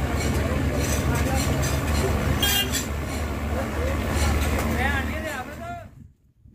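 Busy street ambience: several people talking at once over a steady low rumble of vehicle engines, with occasional clicks. It cuts off abruptly near the end.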